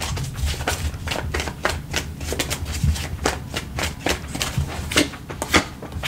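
A deck of tarot cards being shuffled by hand: an irregular run of quick, sharp card clicks and flicks, several a second, over a faint steady low hum.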